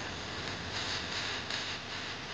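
Steady outdoor background noise: an even hiss with no distinct event in it.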